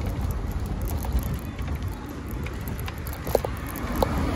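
Low, jittery rumble and rattle of a small vehicle being ridden along an uneven sidewalk, the ride shaking over the paving, with a sharp knock a little after three seconds in.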